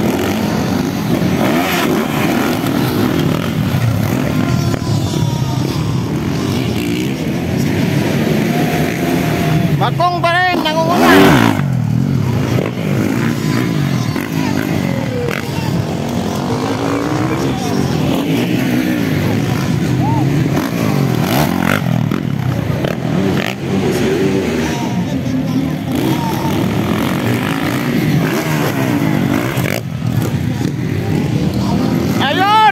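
Motocross dirt bike engines revving and changing pitch as the riders race round the track. One bike comes close about ten seconds in, its engine note rising and then falling, the loudest moment. Crowd voices carry on underneath.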